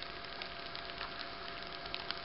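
Faint steady hiss with a thin, steady whistle held at one pitch, and a few faint ticks.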